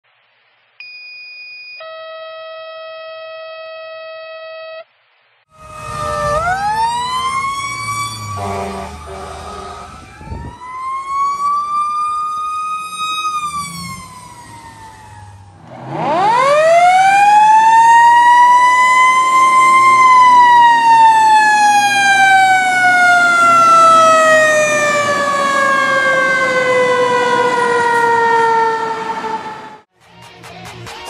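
Two steady electronic alert tones, a short one then a longer one, in the pattern of a fire dispatch two-tone page. They are followed by fire-truck siren wails that wind up and coast down. The last and loudest wail rises steeply, then falls slowly for about ten seconds, as a mechanical siren does when it is let go.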